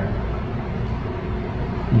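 Steady low hum and hiss of background room noise, even throughout with no distinct events.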